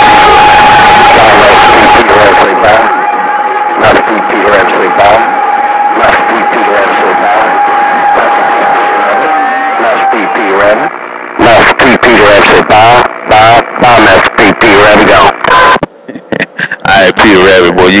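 CB radio receiver audio on skip: garbled voices of stations talking over one another through static, with a steady whistle over them for the first ten seconds or so. After that the transmissions come through choppy and broken up.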